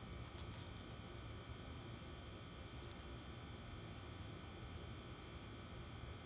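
Faint steady background noise: a low rumble with a thin, steady high whine and a few faint ticks.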